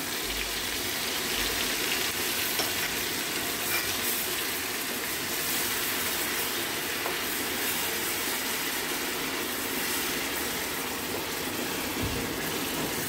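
Onion paste frying in hot oil and butter in a pan, a steady sizzle, stirred with a wooden spatula.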